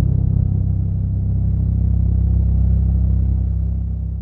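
Cinematic logo-intro sound effect: the deep, steady rumbling tail of a boom hit, which begins to fade out near the end.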